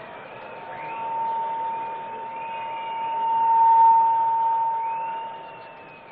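Public-address feedback: one steady high-pitched tone that swells until it is loudest about four seconds in, then fades away, with fainter wavering whistles above it.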